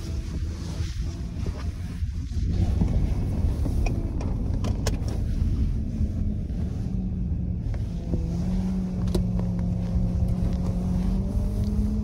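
Car engine and road noise heard from inside the cabin of a moving minivan: a steady low rumble with a faint engine tone, and a few light clicks.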